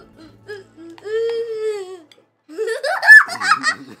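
A child's high voice: a drawn-out, slightly falling vocal sound about a second in, then a loud burst of laughter that rises in pitch near the end.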